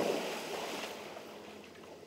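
Splash of a person jumping into a swimming pool: spray falling back and churned water sloshing, loudest at the start and dying away steadily.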